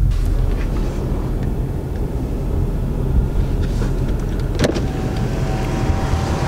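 Diesel pickup truck idling, a steady low rumble heard inside the cab. Near the end, a click and then the steady whine of a power window motor.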